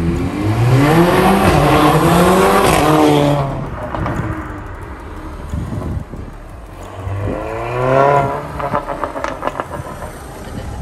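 Mercedes-AMG A45's turbocharged four-cylinder with a stage 2 downpipe accelerating hard, its note rising twice with a dip at a gear change, then fading. Near the end it revs up again and lets off, followed by a quick run of exhaust pops and bangs on the overrun.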